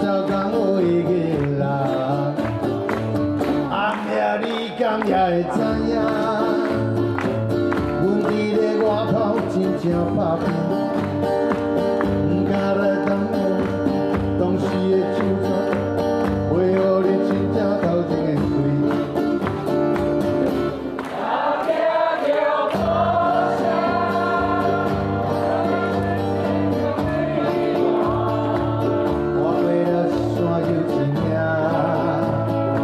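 Live acoustic band music: two acoustic guitars with hand drums (bongos and djembe) keeping a steady beat, and singing over it at times.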